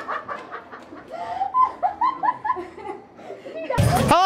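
A woman laughing in a string of short, repeated bursts, about three or four a second. Music cuts in suddenly just before the end.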